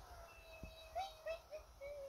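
A faint, thin high-pitched tone held for about a second, then broken into four short chirps that rise and fall; it is the sound passed off as the goblins singing.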